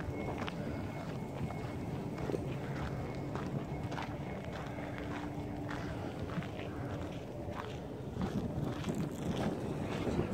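Footsteps walking on a dirt and gravel path, about two steps a second. A faint steady hum runs underneath and stops about seven seconds in.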